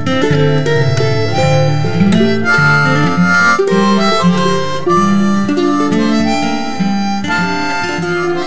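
Harmonica playing a melody of held notes over guitar accompaniment, with no singing.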